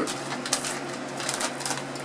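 Plastic popcorn bag crinkling as it is handled, a quick run of crackles through the middle.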